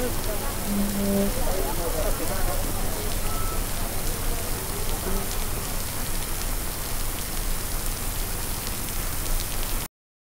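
Heavy rain pouring steadily onto a street and the people in it, a dense even hiss. It cuts off suddenly just before the end.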